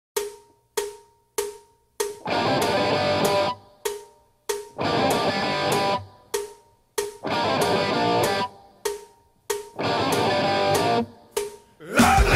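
Rock music played by guitar and drum kit: short stabbed hits followed by a held full-band chord of about a second and a half, a figure that repeats four times.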